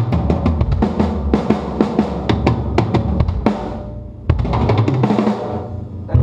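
Rock drum kit playing a busy drum intro: rapid snare and tom hits over the bass drum. It thins out near four seconds in, then one loud hit rings out.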